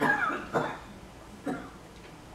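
A person coughing twice in quick succession, followed by a brief hesitant "uh".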